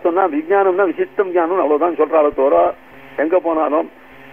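A man speaking in a dull, narrow-band recording, with a short pause about three seconds in.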